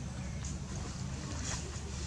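Steady low rumble of wind buffeting the microphone outdoors, with a couple of faint ticks.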